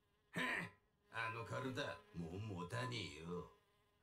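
A man's low, buzzy voice with no clear words: a short breathy sound just after the start, then about two and a half seconds of rasping vocalizing that dies away before the end.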